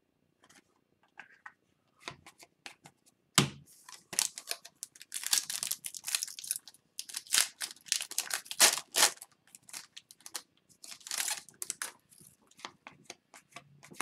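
Foil wrapper of a hockey card pack being torn open and crinkled, in a string of short crackling rips, with one sharp tap about three and a half seconds in.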